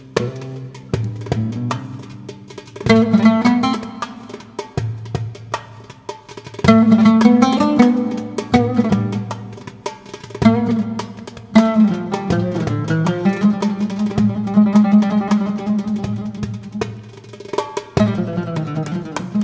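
Oud and darbuka (goblet drum) duo playing a piece in maqam Suznak: the oud picks a melody over the drum's quick rhythmic strikes, with louder phrases swelling in about 3, 7 and 11 seconds in.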